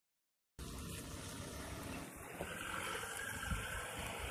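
Steady outdoor background noise with irregular low rumbling from wind on the microphone, starting about half a second in.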